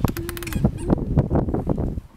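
Hollow plastic clicks, knocks and scuffs from a Little Tikes Cozy Coupe ride-on toy car as a child climbs out through its door, with a rapid rattle of clicks at the start. A child makes a brief held vocal sound during the first half second.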